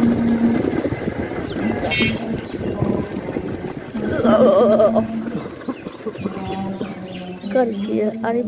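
Motorcycle running along a road, a steady engine hum with rushing wind and road noise. A brief wavering call, about a second long, sounds about four seconds in.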